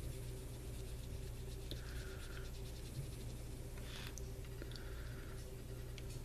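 A few faint strokes of a small paintbrush across leather, laying on potassium permanganate stain, over a steady low hum.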